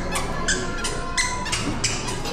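A toddler's squeaky sandals chirping with each step, about three squeaks a second.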